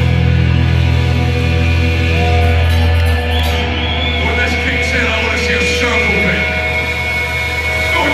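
Blackened speed metal band playing live through a club PA, heard loud on a phone's microphone. A heavy low chord rings on steadily, with held guitar notes and a few sliding notes over it.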